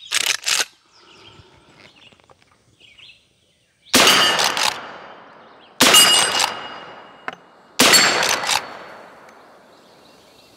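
Three shots from a .357 Magnum carbine, about two seconds apart, each followed by a ringing ding as the bullet hits a steel plate target. Two sharp clacks come right at the start, before the first shot.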